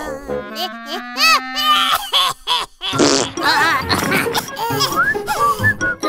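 Cartoon character's wordless giggles and vocal noises over light background music.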